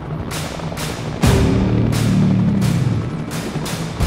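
Film score music: a heavy, deep percussion hit about a second in that hangs and sinks slowly in pitch, among a run of sharp, ringing percussion strikes roughly every half second.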